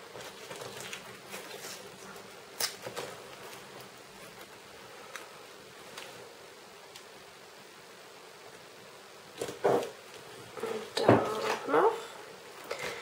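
Washi tape being handled and stuck onto a paper planner page: faint ticks and rustles, then a louder, irregular run of rasping and crackling near the end as tape is worked off and pressed down.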